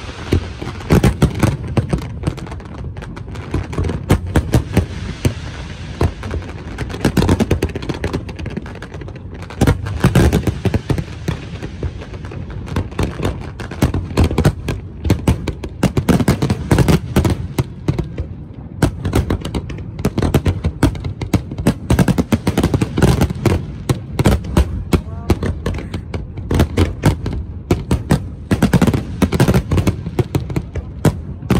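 Aerial fireworks shells bursting in rapid succession, a dense, continuous barrage of bangs and crackling.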